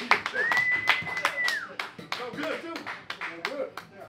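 Scattered audience clapping after a live blues number, with one long high whistle about half a second in and a few voices calling out.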